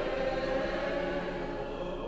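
Choir singing slow, long-held notes.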